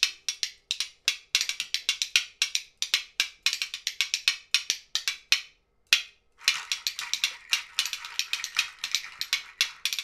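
A homemade scraper played by hand across a ribbed metal panel, washboard-style: a fast run of sharp clicks, a brief pause about six seconds in, then a denser, more continuous rasp.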